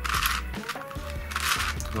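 Plastic MF8 Crazy Unicorn twisty puzzle being turned by hand in half-turn moves: two short plastic scraping turns, one at the start and one about a second and a half in, over background music.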